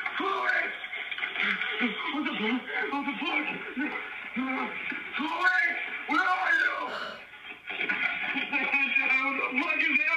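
A recorded voice snippet played over a phone call on speakerphone. It starts abruptly as the call connects and has the narrow, muffled sound of a phone line.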